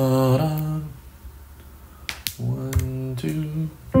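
Notes played on a digital keyboard, the first chord dying away within the first second. About two seconds in come a couple of sharp clicks, then more held notes.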